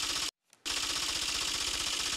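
Typewriter-style sound effect of rapid clicking keys, a fast even clatter. It breaks off for about a third of a second near the start, then resumes and runs on.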